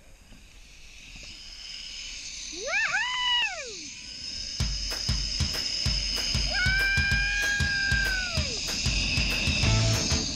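A rider whoops on a zipline, with a short rising-and-falling "whoo" about three seconds in and a longer held one around seven seconds. Under the whoops, a rushing noise of wind and the trolley on the cable builds as he speeds up. Rock music with a steady drum beat comes in about halfway.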